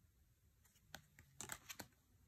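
Oracle cards being handled: a quick cluster of soft clicks and slides of card stock in the second half, as the cards are set down and a new pair is laid out.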